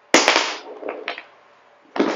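Handling clatter of small plastic lipgloss tubes knocking together as they are picked up. There is a sharp clatter just after the start, two softer knocks about a second in, and another sharp knock near the end.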